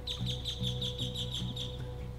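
A bird calling a fast run of short, high, evenly repeated chirps, about seven a second, that stops shortly before the end, over faint background music.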